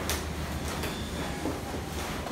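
Cloth rubbing across a whiteboard: several quick wiping swipes as the board is erased.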